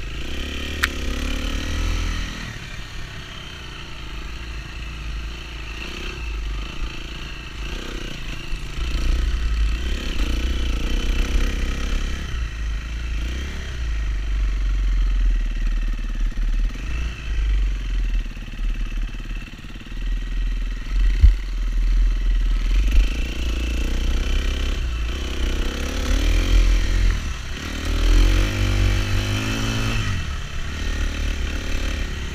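Dirt bike engine running along a trail, its revs rising and falling over a heavy low rumble, with one sharp knock a little past the middle.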